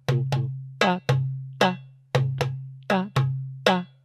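Darbuka (goblet drum) played with the right hand alone in a simple repeating groove of deep doums in the centre of the head and sharp teks near the rim, about two and a half strokes a second. The low doum keeps ringing between the strokes.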